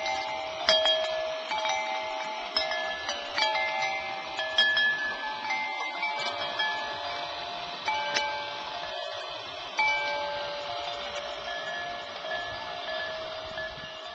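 Metal chimes struck at irregular moments, many ringing tones of different pitches overlapping, fading gradually toward the end.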